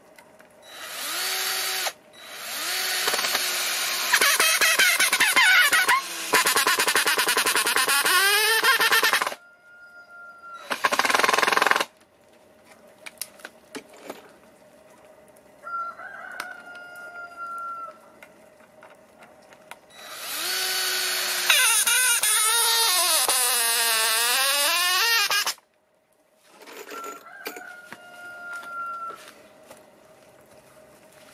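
Cordless drill driving wood screws through a thin board into a wooden block, running in three spells: a long one near the start, a short one around the middle and another long one later, its motor pitch sliding up and down as it runs.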